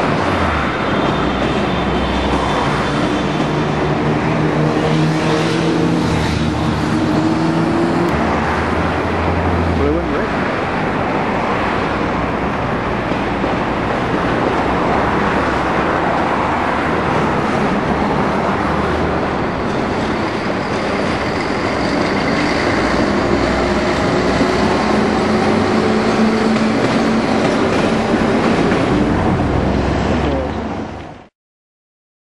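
Locomotives moving through a rail yard: a shunting locomotive hauling coaches with a humming motor whose pitch shifts, over a steady rumble of rail and yard noise.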